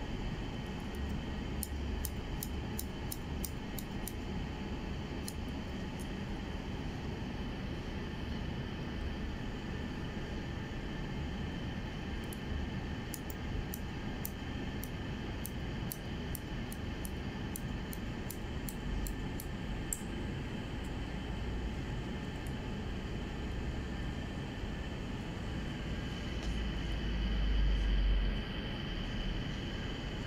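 Hair-cutting scissors snipping through short hair in quick runs of small, crisp clicks, in two main bursts, over a steady background hum. A louder low rumble comes near the end.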